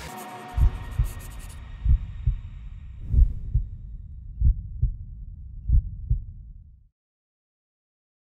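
Heartbeat sound effect: five low double thumps (lub-dub) about 1.3 seconds apart, over the fading tail of music at the start. It stops abruptly about seven seconds in.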